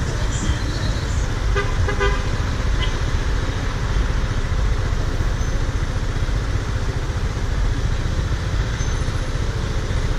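Steady low rumble of wind and road noise on a scooter-mounted camera riding an Aprilia Scarabeo 200ie, with two short vehicle-horn toots about one and a half and two seconds in.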